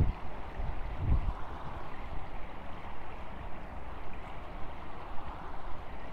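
Steady splashing and lapping of water in an outdoor competition swimming pool where swimmers are training, with a couple of low bumps near the start.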